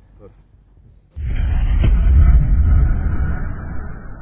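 Deep boom of a logo sting sound effect: it starts suddenly about a second in, with a sharper hit just after, and then dies away slowly.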